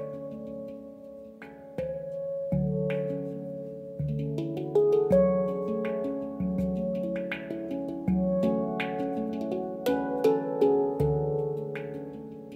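Ayasa handpan in an F#3 Low Pygmy scale played by hand: single struck notes ring and overlap in a slow, calm melody. Deep low notes are struck a few times beneath the higher ones.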